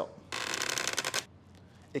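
A brief rasping rattle lasting about a second, made of very fast fine ticks: the plastic pelvis-and-femur model being handled and tilted close to the clip-on microphone.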